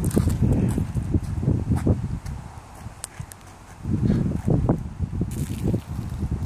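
Footsteps on asphalt mixed with the rumble of a phone microphone being handled while walking: uneven thumps and scuffs, easing off for about a second in the middle before picking up again.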